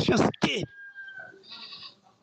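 A man speaking, breaking off less than a second in. A faint thin steady tone and low murmur fill the rest.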